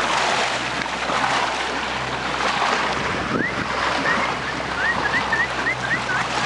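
Wind and choppy sea water rushing past a small boat, with the low steady hum of its idling engine underneath. About halfway through, a quick run of short high chirps begins and carries on to the end.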